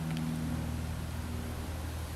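A steady low machine hum made of several even tones, with a faint hiss above it.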